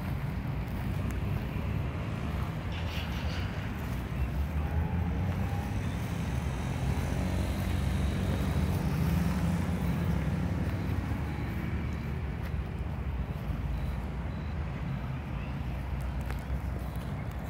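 Steady low rumble of nearby road traffic, swelling a little about halfway through.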